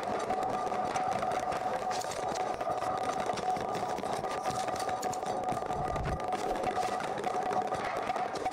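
A steady buzzing drone holding two tones, one stronger than the other, over a fluttering texture, with a brief low rumble about six seconds in.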